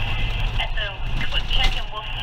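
A muffled voice talking, with no clear words, over the steady low rumble of a car interior.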